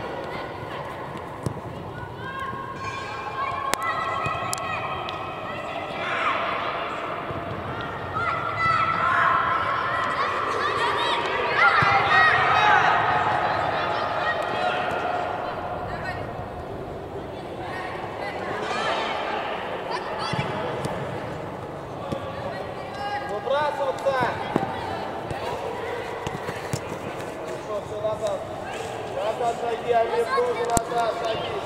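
Unclear shouting from several voices, players and coaches calling across a football pitch in a large indoor hall, with the hall's echo. It is loudest around the middle, with a few sharp knocks of the ball being kicked.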